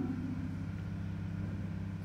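Room tone: a steady low hum, with the tail of a man's voice dying away in the first moment.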